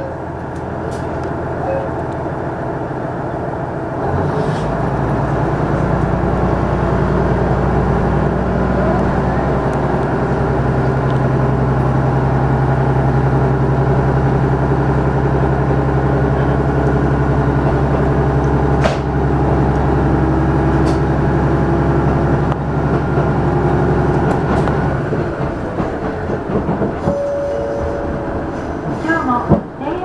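Running sound heard inside a KiHa 110 series diesel railcar: its diesel engine's drone steps up about four seconds in and holds steady under power, then drops away after about 25 seconds, leaving a lighter rumble of the car running on.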